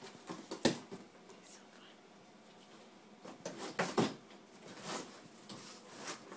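A springer spaniel tearing and worrying a cardboard box: short, sharp rips and crunches of cardboard in the first second and again a few times between about three and four seconds in, with a quieter stretch between.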